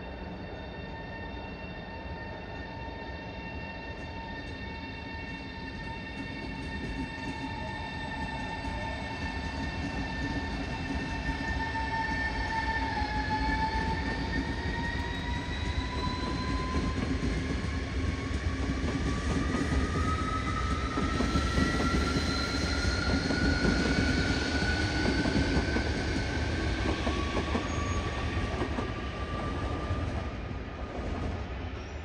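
Italo ETR 675 high-speed electric train pulling out, its traction drive whining in steady tones that begin to rise in pitch about halfway through as it picks up speed. Wheel and rolling rumble grows louder alongside.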